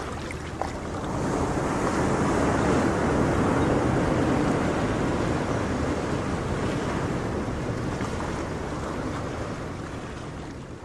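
Sea waves washing on a shore: a wave swells about a second in and slowly ebbs away.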